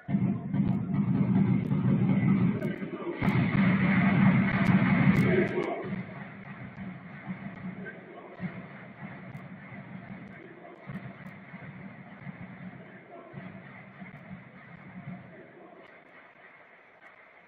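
Football stadium crowd chanting, loud for the first six seconds with a few sharp knocks in the middle, then settling to a quieter murmur of voices.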